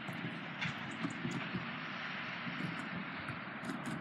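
Skateboard wheels rolling along a wet concrete ledge: a steady, gritty rolling noise with a hiss from the wet surface and a few small clicks.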